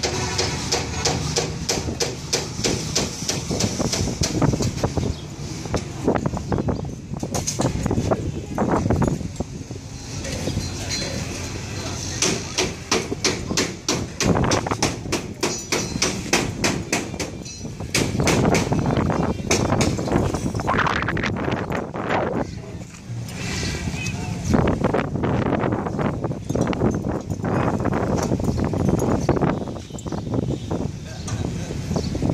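People talking over repeated sharp knocks, like hammering.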